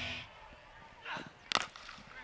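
Cricket bat striking the ball: a single sharp crack about one and a half seconds in, against faint open-air ambience.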